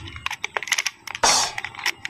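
A plastic clockwork wind-up swimming turtle toy being wound by the key on its back: a run of small, uneven ratchet clicks, with a brief scraping rasp a little past halfway.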